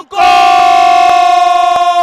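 A television football commentator's drawn-out shout of "goal!" (골), held loudly on one pitch as the shot goes in.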